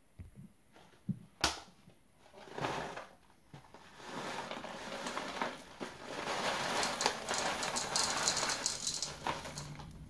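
A few sharp knocks and a rustle of handling in the first couple of seconds, then from about four seconds in a dense crackling patter of pearl sugar nibs pouring from a bag onto dough in a stainless steel mixing bowl, the bag crinkling as it is shaken.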